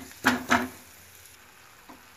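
Curry leaves and ground mustard seed frying in a little oil in a kadhai on a low flame: a faint, steady sizzle. The leaves have fried dry and crisp. A steel spatula scrapes the pan once or twice near the start.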